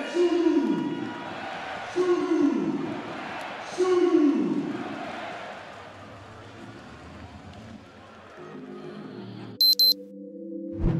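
Basketball arena crowd noise, with three loud falling tones about two seconds apart, each sliding down in pitch over about a second. Near the end a steady chord comes in, then a sudden switch to music with high beeps.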